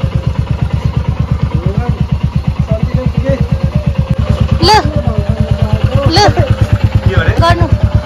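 Motorcycle engine idling with an even, steady beat of about ten low pulses a second.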